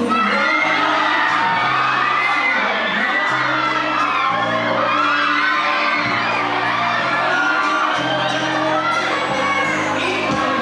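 A student audience shouting, shrieking and cheering over loud pop backing music with a held bass line.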